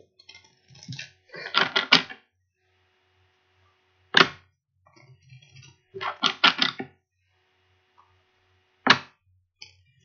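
A tarot deck being shuffled in the hands: two bursts of rapid card flicking, and a single sharp snap about four seconds in and again about nine seconds in.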